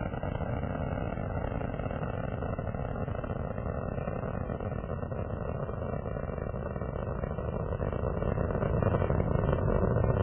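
Steady rushing roar of Space Shuttle Atlantis's two solid rocket boosters and three main engines during ascent, getting louder over the last two seconds.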